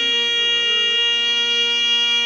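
Instrumental music: a reed wind instrument holds one long, steady note over a continuous low drone.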